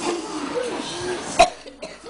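Children's voices, then one sudden loud sharp sound, a cough or a knock close to the microphone, about one and a half seconds in.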